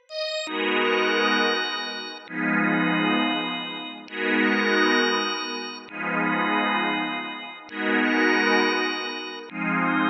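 ElectraX software synth playing a sustained ninth chord on a looped pattern, the chord starting again about every 1.8 seconds, six times, each fading a little before the next.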